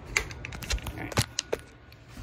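A handful of sharp, irregular taps and clicks, about five in two seconds: handling noise from a phone being picked up and moved by hand.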